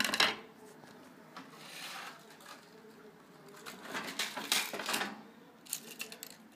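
Small electronic parts and plastic containers clattering and clicking as they are handled on a workbench. A sharp clatter opens, then a denser run of rattling clicks comes about four to five seconds in.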